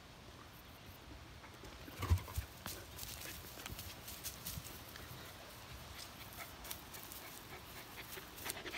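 Dogs moving about close by on grass: a couple of soft thumps about two seconds in, then scattered light ticks and rustles.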